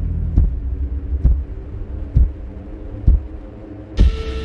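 Trailer sound design: a low rumbling drone with a deep thud about once a second, like a slow heartbeat, four times. A sudden hit comes right at the end.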